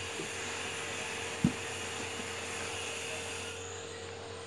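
Steady background hiss and electrical hum, with one dull thump about one and a half seconds in and a few faint knocks, as a cable plug is handled against a smartphone on a table.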